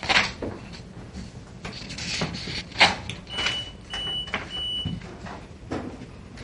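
University library ambience: scattered sharp knocks and clicks over a low steady hum, the loudest just after the start and again near the middle, with three short high beeps in the second half.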